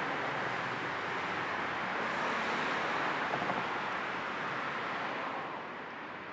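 Steady rushing noise of road traffic, easing off a little near the end.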